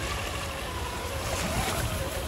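Traxxas TRX-4 Bronco RC crawler's electric motor and gear drive whining steadily, the pitch wavering a little with the throttle. Low wind rumble on the microphone and waves washing on the shore lie underneath.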